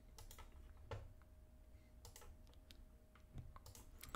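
Faint, scattered clicks of a computer keyboard and mouse, about a dozen irregular taps, over a faint steady hum.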